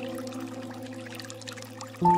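Water trickling and dripping, under held music notes that slowly fade away.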